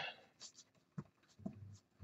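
Faint strokes of a paintbrush spreading a thin acrylic glaze across canvas, with a short tick about a second in.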